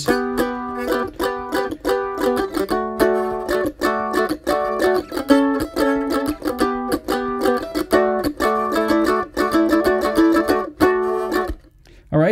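F-style mandolin strumming the chorus chord progression, G to D, A, G and back to D, in steady rhythmic strokes, stopping just before the end.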